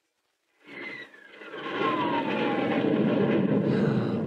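Radio-drama sound effect of an airplane coming in low over the runway to land: about half a second in, its engine noise rises quickly and stays loud, with a whine that falls steadily in pitch as it passes.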